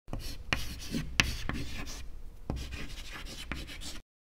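Pen scratching across paper in a run of writing strokes, with a few sharper taps along the way.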